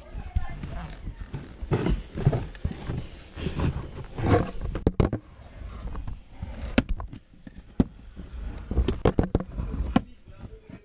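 Muffled, unclear voices mixed with irregular knocks, clicks and rustling, as of a camera handled close to the microphone.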